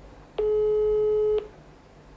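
Telephone ringback tone played through a mobile phone's loudspeaker: one steady beep about a second long, the sign that the outgoing call to the board is ringing and has not yet been answered.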